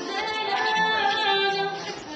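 A woman singing a song in long held notes, accompanied by her own acoustic guitar.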